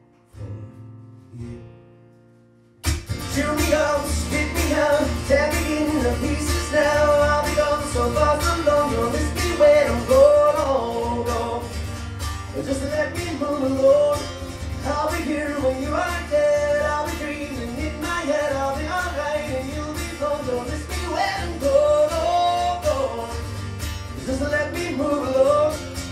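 Live acoustic guitar and male singing: after a quieter first few seconds the guitar comes in hard with full strumming about three seconds in, a male voice singing over it.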